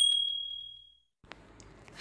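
A notification-bell sound effect: one clear, high ding that fades out within about a second. Faint room noise with a small tick follows.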